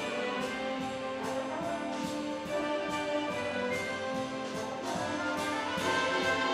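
Youth symphony orchestra playing a swing-era big-band medley, with brass to the fore over a steady drum-kit beat. Cymbal strokes fall about twice a second.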